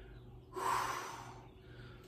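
A man's single breath out, about a second long and fading, through the mouth on the effort of pressing a pair of dumbbells overhead.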